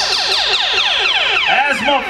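Turntable scratching of a pitched sample: a tone glides steadily downward, then from about one and a half seconds in it breaks into quick rising-and-falling scratch strokes.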